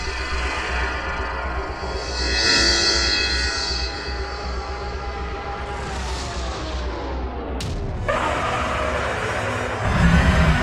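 Sci-fi soundtrack music with electronic teleport effects. A shimmering swell comes a couple of seconds in. A falling sweep follows, ending in a sharp zap about seven and a half seconds in, then a noisy hiss.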